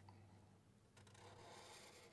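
Near silence, with faint rubbing of a Sharpie marker tip drawing on paper, a little more audible in the second half.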